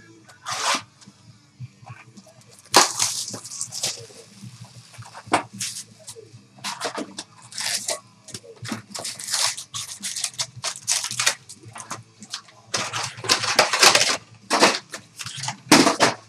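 A box of trading cards and its packs being torn open and handled by hand: a run of rustling, crinkling tears of paper, cardboard and wrapper, some stretches of a second or two, with short pauses between.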